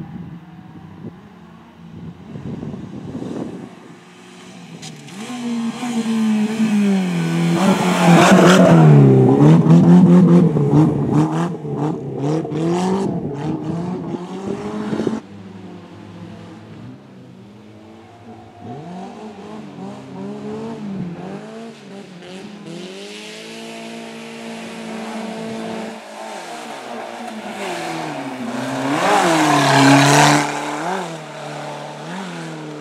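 Suzuki Swift autocross car's engine revving hard, its pitch rising and falling over and over with gear changes and lifts off the throttle. It is loudest as it passes close about eight to eleven seconds in, and again near the end.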